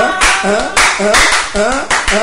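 A man singing a praise chorus, with hand-clapping in a steady beat.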